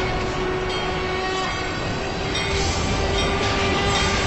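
Conch shell (shankha) blown in a long, steady horn-like note, over a dense, noisy backing.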